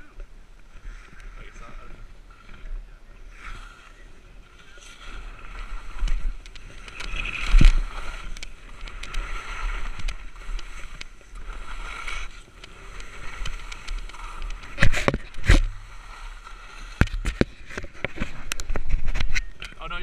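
Skis scraping and swishing over snow on a steep descent, in uneven surges, with several sharp knocks a third of the way in and again in the second half.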